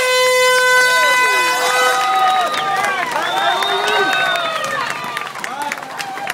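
Starting horn sounding one steady high blast of about two seconds, the signal that starts a road race, followed by a crowd cheering and whooping as the runners set off.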